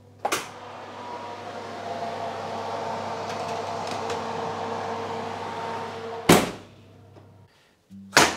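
Oven door of a range cooker pulled open with a clunk, then the oven's fan whirring loudly and steadily through the open door of the hot oven. The door shuts with a bang about six seconds in.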